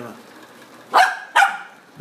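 A Lhasa Apso barking twice, two short sharp barks about half a second apart.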